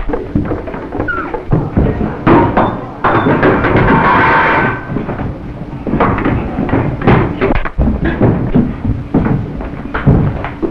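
Fistfight sound effects: a rapid run of punches, thuds and scuffling against furniture, with a longer, louder stretch about three seconds in, and music playing alongside.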